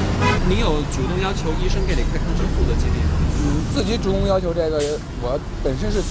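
Busy city-street traffic, a steady low rumble of passing cars and buses, with a person talking over it.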